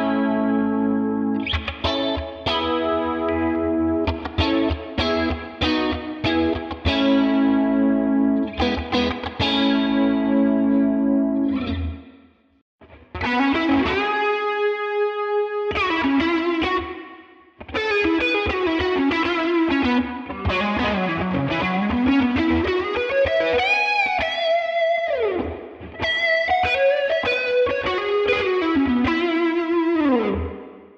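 Electric Stratocaster through the Neural DSP Tone King Imperial MKII amp plugin, with compressor, overdrive and chorus. It plays rhythmic strummed chords for about twelve seconds, then a single-note lead line with string bends and vibrato.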